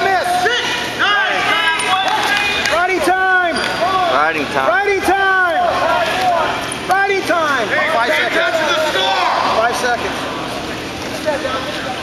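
Several voices shouting short calls in a gym, rising-and-falling cries coming one after another and overlapping.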